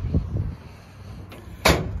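Aluminum diamond-plate truck-bed toolbox lid slammed shut once near the end, a sharp metal bang after a couple of light knocks; it shuts nicely.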